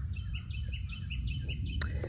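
A bird singing a quick series of short, high chirps, about five a second for a second and a half, over a steady low rumble.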